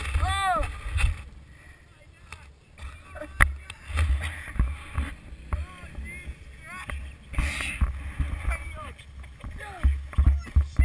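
Wind rumbling on a helmet camera's microphone, with short rising-and-falling yelps or voice sounds, the loudest about half a second in. A single sharp knock comes about three and a half seconds in.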